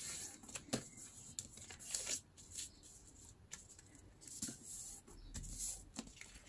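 Newspaper rustling and sliding under hands as it is folded over and pressed flat, in a few short, faint rustles.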